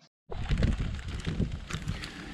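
Wind buffeting the microphone outdoors, starting abruptly a moment in as a low, uneven rumble with a faint hiss, and a light tap near the end.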